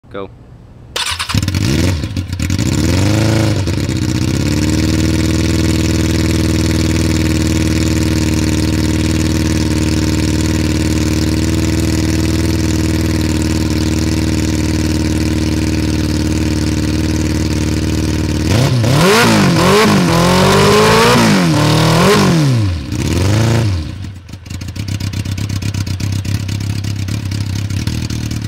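Kawasaki sport bike engine starting about a second in, blipped twice, then idling steadily. Past the middle it is revved several times in quick succession, then settles back to idle near the end.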